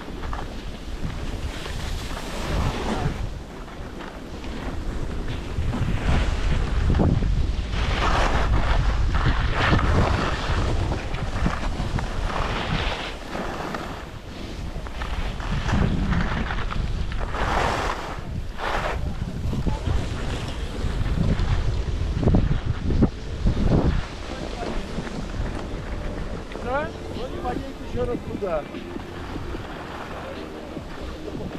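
Wind buffeting the microphone over a low rumble, with skis scraping across packed, chopped-up snow in a series of surges, one per turn. It grows quieter after about 24 seconds as the run slows.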